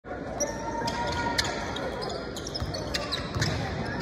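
Basketball being dribbled on a hardwood court, a few irregular bounces, in a large arena with voices in the background.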